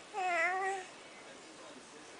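A house cat meows once, a short call of under a second that dips and rises in pitch.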